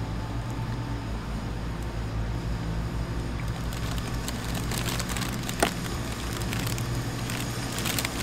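Steady low hum of city traffic in the background, with plastic snack packaging crinkling and rustling in the second half and one sharp click just past the middle.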